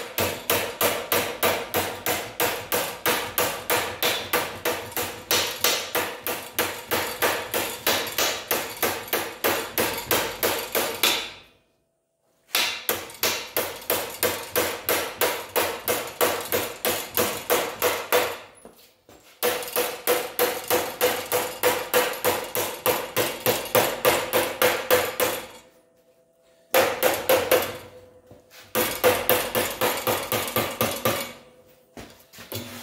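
A hand hammer beating the edge of an 18-gauge steel sheet clamped over an I-beam, folding the lip up to a right angle. The blows are quick and even, about four or five a second, in long runs broken by a few short pauses, with the steel ringing under them.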